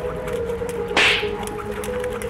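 Background music with a single loud, short whoosh about a second in, over faint light ticks.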